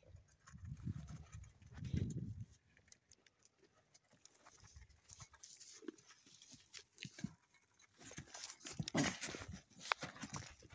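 A goat eating feed from a bowl: crunching and scattered sharp clicks of muzzle and feed against the bowl, busiest near the end, with low rumbling in the first two seconds.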